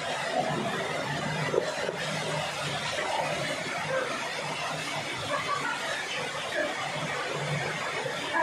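Waterfall pouring steadily into a rock pool, a constant rushing splash, with faint voices and laughter of swimmers beneath it.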